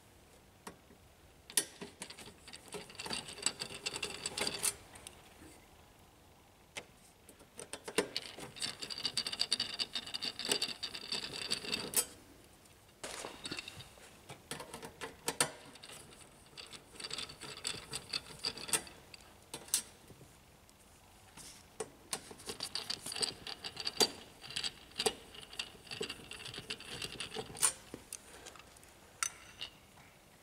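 A screwdriver turning screws out of a laser printer's sheet-metal rear panel: stretches of scraping, clicking and squeaking as each screw is backed out, with quiet gaps between screws.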